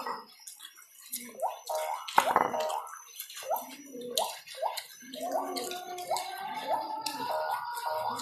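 Wet eating sounds from eating sambal, rice and fried fish by hand: short, irregular smacks and squelches that rise in pitch, a few a second. A faint steady tone joins about five seconds in.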